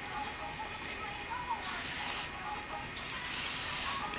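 Yarn being drawn through crocheted stitches along a slipper sole's edge: two soft swishes, about a second and a half in and again near the end.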